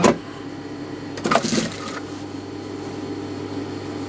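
Steady low hum of an industrial sewing machine's motor running with the needle still, and a short rustling noise about a second and a half in.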